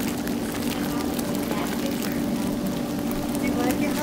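Whirlpool tub's jet pump running with a steady low hum, the water churning and bubbling through the jets.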